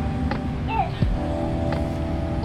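Background music: sustained electronic tones over a heavy low end, with a low drum hit about a second in.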